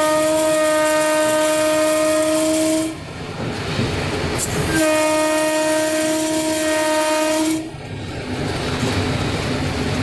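Electric locomotive's horn sounding two long steady blasts on a single note, the first ending about three seconds in and the second running from about five to seven and a half seconds, over the rumble and rattle of the locomotive running at about 100 km/h, heard from inside the cab.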